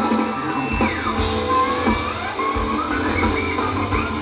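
A live rock band playing electric guitars, drum kit and keyboards, heard from the audience through the PA. About a second in, a lead line glides down in pitch, and more bending notes follow.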